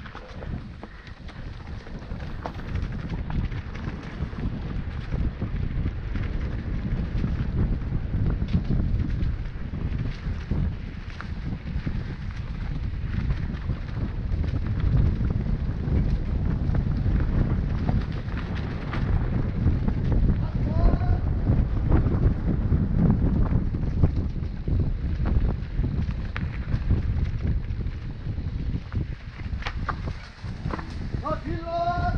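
Wind buffeting an action camera's microphone while riding a mountain bike down a rough dirt forest trail, with a steady low rumble and frequent small rattles and knocks from the bike over the ground. A couple of short rising chirps come through about twenty seconds in.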